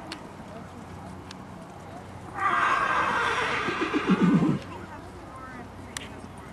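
A horse whinnying once, loudly, for about two seconds. The call starts high and ends in low, shaking notes.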